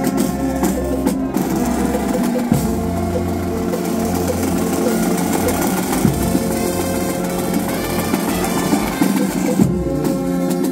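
Marching brass band playing, with tubas holding a loud low bass line under sustained chords that shift every couple of seconds, and drum beats.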